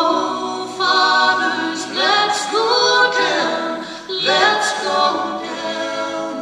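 Four voices, a woman's among them, singing a cappella in close harmony: a slow gospel hymn sung in held notes, with new phrases starting together every second or two.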